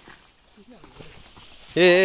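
Faint footsteps and leaves brushing as people push through dense undergrowth. A quiet voice comes in about half a second in, and a man starts talking loudly near the end.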